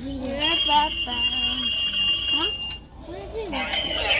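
Electronic ringing from a rotary-telephone Halloween decoration: one steady, high ring lasting about two seconds that stops just before three seconds in.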